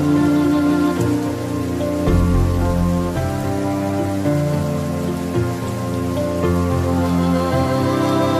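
Steady rain falling, mixed with slow, calm instrumental music whose sustained notes change every second or two.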